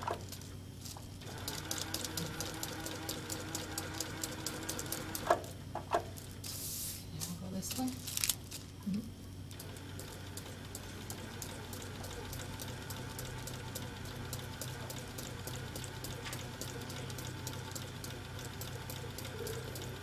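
Free-motion quilting machine running with an unthreaded needle, punching rapidly and evenly through quilting paper: a steady motor hum under a fast run of needle ticks.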